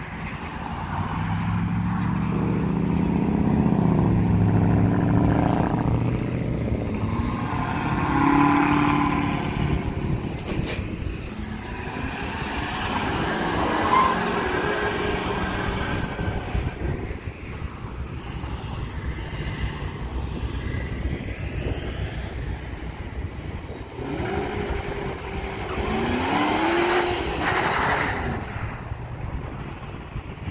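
Cars accelerating hard away along a road one after another. An engine revs up loudly in the first few seconds and again about eight seconds in, traffic passes in the middle, and near the end another car revs up twice.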